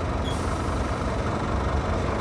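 Scania 320 truck's five-cylinder diesel idling under a steady hiss of compressed air, as the pneumatic suspension is being levelled.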